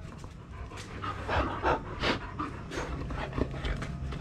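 A shepherd dog panting in quick, uneven breaths close by while being petted.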